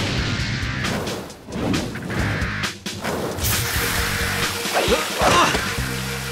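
Cartoon action soundtrack: music with whooshes and crashing hits. From about halfway there is a steady hiss, the sound of the fire sprinklers going off.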